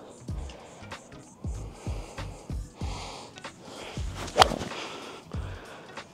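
A golf iron striking the ball off the turf: one sharp crack about four seconds in, over background music with a low beat.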